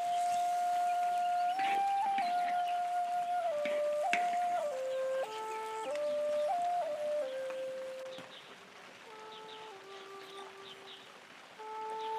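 Background music: a slow melody of held notes stepping from pitch to pitch, softer in the last few seconds.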